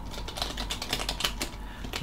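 Computer keyboard being typed on: an irregular run of quick key clicks, several a second.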